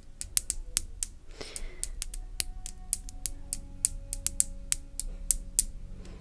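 Computer keyboard keys clicking in irregular runs, several strokes a second.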